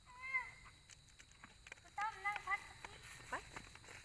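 Brief high-pitched vocal sounds, one just after the start and a wavering one about two seconds in, over faint knocks of a hand hoe digging into soil.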